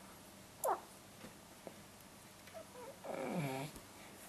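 A baby's small vocal sounds while being spoon-fed: a brief high squeak falling in pitch about half a second in, then a longer low sound sliding down in pitch near the end.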